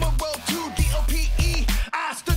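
Hip hop track: a male rapper over a beat with deep bass notes. The bass cuts out for a moment near the end.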